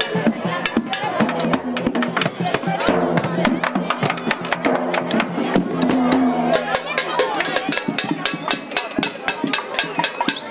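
Children's drum band beating a rhythm on hand-held bass drums, with cymbals, amid crowd voices. The hits grow denser and more even about two-thirds of the way in.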